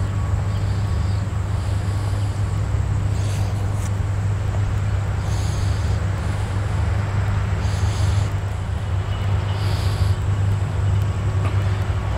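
Steady low hum of a small engine idling, unchanging throughout, with a few faint brief hisses above it.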